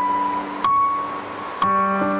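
Keyboard playing soft, sustained piano chords, with a new chord struck about two-thirds of a second in and again near the end.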